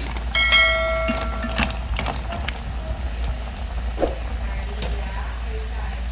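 A spoon strikes the side of a stainless steel cooking pot, and the pot rings for about a second. A few light knocks follow as mussels are stirred in a thick sauce.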